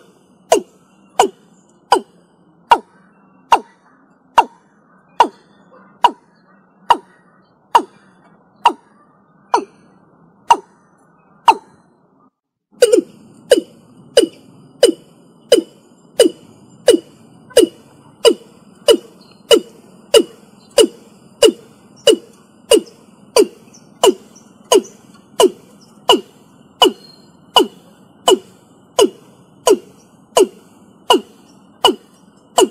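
Watercock (Gallicrex cinerea) calling in a long series of short, deep notes, each sliding slightly down in pitch. The notes come at a little over one a second and gradually slow. After a brief break a little before halfway, a new run starts at about two notes a second over a faint steady high tone.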